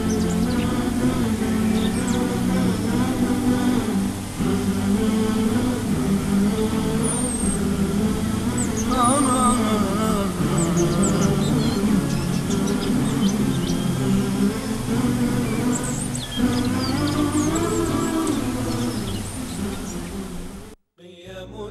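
Chanted vocal music: a voice holding a slow, wavering melody without pause. Short high bird chirps are mixed in over it in the middle and again near the end.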